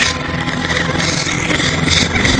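Cartoon soundtrack music over a steady low rumble of vehicle sound effects.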